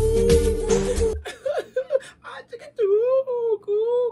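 Amapiano track with deep bass and a held synth note, cut off about a second in. Then a man's voice wails and sings a wavering, sliding tune with no backing.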